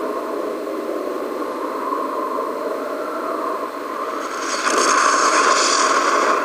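Soundtrack roar of a nuclear explosion: a steady, thin noisy rumble with no deep bass that swells louder and hissier about four seconds in.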